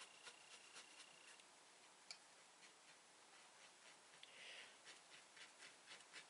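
Near silence: faint light ticks and scratching from handwork with a small pen-like tool on paper hexie pieces, with a brief soft rustle about four seconds in.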